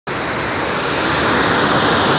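Steady rush of water from a sheet-wave surf simulator, a thin sheet of water pumped at speed up and over its padded slope.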